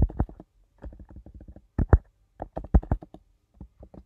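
Keystrokes on a computer keyboard: a run of irregular, sharp key clicks in small clusters, the loudest around two seconds in and just before the third second.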